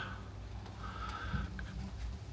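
Quiet room with a low steady hum and faint handling noise as a small handheld gimbal camera is carried and set down, with a faint thin tone partway through.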